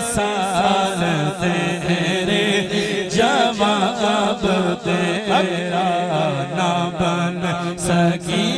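Male voices singing a naat, an Urdu/Punjabi devotional poem, with an ornamented, wavering melody over a steady held low drone.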